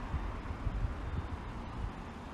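City street traffic: cars going by with a steady low rumble of engines and tyres.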